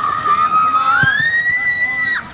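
A long, high-pitched shout from one person, held on one note for about a second, then rising in pitch and held again before breaking off.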